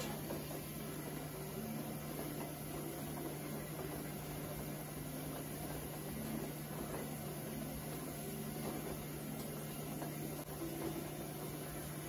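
Steady low hum with an even faint hiss from a running kitchen appliance, unchanging throughout.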